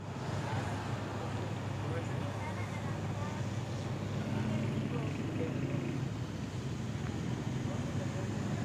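Steady vehicle and traffic noise with a low rumble, and faint indistinct voices in the background.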